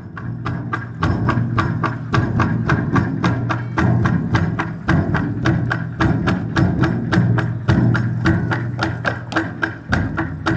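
A large red barrel drum beaten with sticks by several players in a Miao drum dance: a fast, even run of strikes, about five a second, over the drum's low ringing tone.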